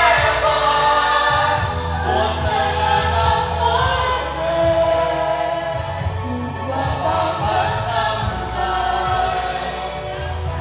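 A group of men and women singing a pop song together into handheld microphones over a backing track with a steady bass line.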